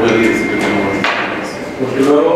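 Men talking across a meeting table. A thin, steady high tone sounds for about a second near the start, and a short knock comes about a second in.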